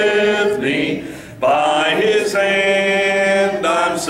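A man singing a hymn into a microphone, with long held notes. The voice drops away briefly about a second in and comes back strongly.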